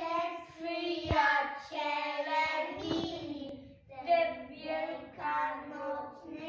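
A group of young children singing together in phrases of held notes, with a single short knock about a second in.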